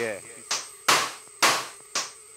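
Electronic percussion from a littleBits Synth Kit circuit: four sharp, hissy noise hits about two a second, each dying away quickly, triggered from the modules on the table.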